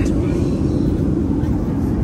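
Steady low drone of a Boeing 737 airliner cabin in flight: jet engine and airflow noise filling the cabin.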